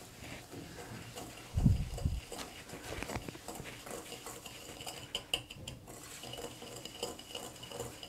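Wire hand whisk beating butter and sugar in a glass bowl, creaming them: the wires scrape and tick against the glass in quick, irregular strokes. There is one dull, low thump about a second and a half in.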